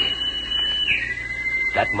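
A two-note whistle signal: a high steady note held for about a second, then a lower note held for another second. It is taken as the signal of a second party of fighters across the way.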